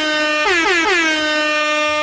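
Air horn sound effect, loud: a blast, two quick short blasts, then a long held blast that cuts off suddenly, each one sliding down in pitch at its start.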